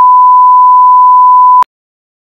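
Censor bleep: a single loud, steady pure tone blanking out a rude word, cutting off suddenly about one and a half seconds in.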